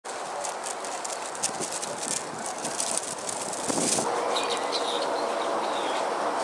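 Outdoor park ambience with small birds calling. A steady background of outdoor noise carries scattered high chirps, and a short high call repeats several times in the last two seconds.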